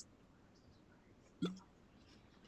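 Near silence with faint room tone, broken about one and a half seconds in by one short, hiccup-like vocal sound from a person.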